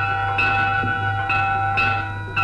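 Background music of bell-like struck tones, a new strike every half second to a second over several held, ringing pitches.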